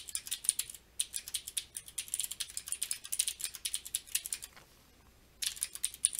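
Typing on a computer keyboard: a fast, steady run of keystrokes for about four and a half seconds, a pause of about a second, then a few more keystrokes near the end.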